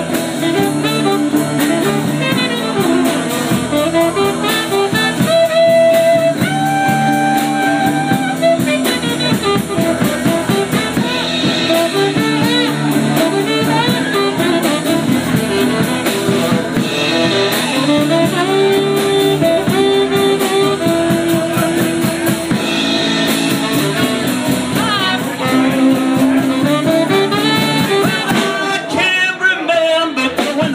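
A live band playing rock and roll: saxophone lines of held and bending notes over guitar and a drum kit.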